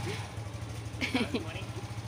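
Motorcycle engine idling steadily with a fast, even low pulse.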